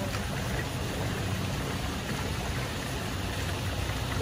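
Water running steadily along a wooden gem-fossicking sluice trough, a sieve being worked in it.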